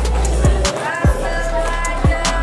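Background music: an electronic track with deep kick-drum thumps over a sustained bass.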